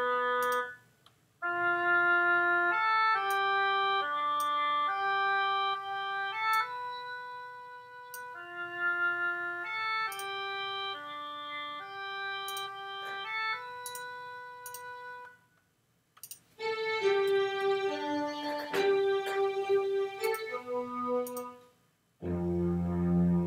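A sequenced orchestral sketch playing back through sampled instruments in Reason: an oboe sample carries a line of held notes over string-section parts and chords. The phrase stops about fifteen and a half seconds in and starts again a second later.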